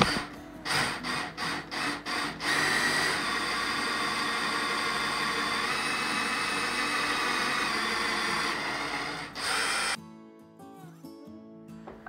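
Cordless drill boring a hole into a wooden block: a few short bursts as the bit starts, then a steady run of about six seconds before it stops.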